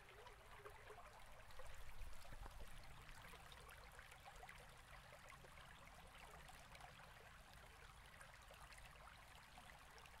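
Near silence: faint room tone, with a slight low rumble for about a second near the two-second mark.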